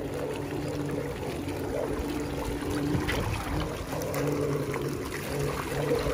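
Aiper Smart cordless robotic pool cleaner running in shallow water: its pump motor gives a steady hum while the water it shoots up splashes and trickles around it.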